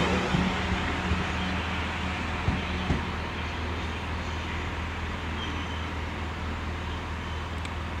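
Class 444 Desiro electric multiple unit pulling away from the platform, its running noise and motor hum slowly fading as it draws off, with a couple of light knocks from the wheels partway through.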